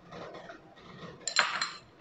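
Sugar poured from a small glass bowl into a stand mixer's glass bowl, a faint soft rustle, then a single sharp, ringing glass clink about one and a half seconds in.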